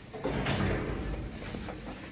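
Elevator doors sliding, with a sharp clunk about half a second in and a low rumble after it.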